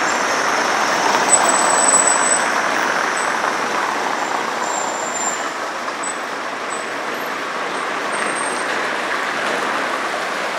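Street traffic: cars and vans driving past on a wet city street, with engine and tyre noise. The loudest pass comes about one to three seconds in.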